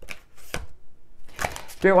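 A deck of tarot cards being shuffled in the hands: several separate sharp card snaps.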